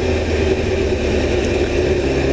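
Motorcycle riding at a steady speed: the engine runs with an even low rumble under wind and road noise, with no change in pitch.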